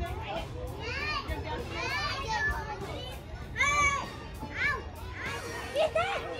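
Children playing: a string of short, high-pitched wordless calls and squeals about a second apart.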